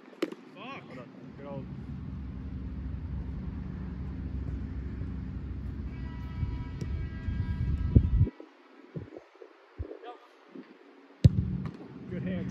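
A football struck hard once, a sharp thud near the end, after a few lighter knocks. For most of the first part a steady low rumble runs, then cuts off suddenly.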